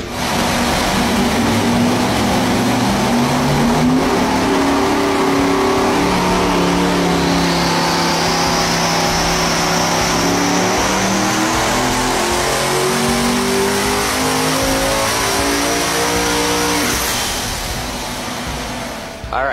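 Steve Morris Engines' quad-turbo V16 running hard, its engine note stepping up and down in pitch every second or two. A high whine rises from about seven seconds in, and the engine sound ends about a second before the close.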